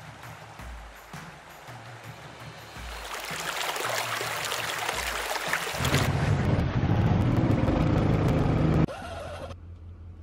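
Background music with a low bass line, under rushing water from a culvert pipe pouring into a ditch. The water grows louder from about three seconds in, is loudest for a few seconds, and cuts off suddenly about a second before the end.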